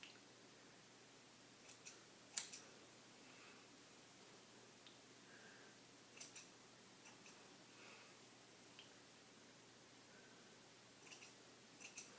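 Hair scissors snipping through dry curly hair: sharp snips, often two or three close together, about two seconds in, again around six to seven seconds, and a cluster near the end.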